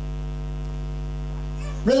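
Steady electrical mains hum, a low buzz with many even overtones, holding level through a pause in speech until a man's voice returns near the end.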